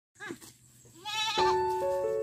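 A goat bleating: a short call, then a longer wavering bleat. About one and a half seconds in, background music with sustained keyboard-like notes starts.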